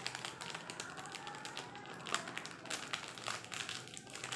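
Thin clear plastic packet crinkling and crackling in the hands as it is folded and pressed shut, with many quick irregular crackles.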